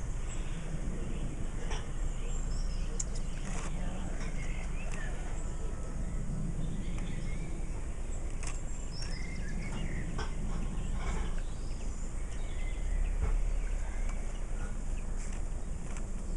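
Outdoor ambience: a steady low rumble of wind on the microphone, with scattered light clicks and faint bird chirps.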